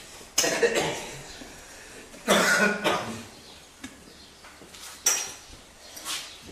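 A man coughing in three short, sudden bursts, about two seconds apart.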